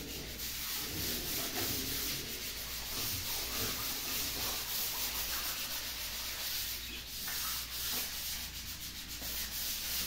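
Walls being sanded by hand with sandpaper by two people: a continuous scratchy rubbing of abrasive paper strokes against the wall surface.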